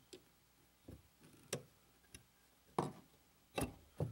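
Faint, uneven metal clicks, about six in four seconds and loudest near the end, as a screwdriver turns the lever cap screw on a Wards Master No. 5 jack plane to set the lever cap's tension.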